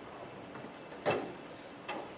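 Two sharp clicks about a second apart, the first louder, from keys struck on a laptop keyboard as a chat command is typed, over faint room noise.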